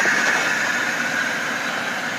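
A 2005 Chevrolet Impala running as it creeps slowly toward the microphone, heard as a steady hiss with an even high whine that eases off slightly.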